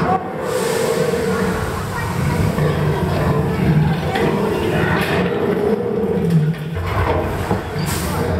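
Expedition Everest roller coaster train running along its track through the dark mountain interior, a loud continuous rumble with riders' voices mixed in.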